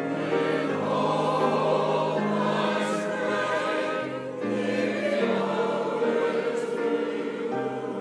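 Mixed choir of men and women singing together in held chords, the notes changing every second or so, with a short dip in loudness a little past halfway.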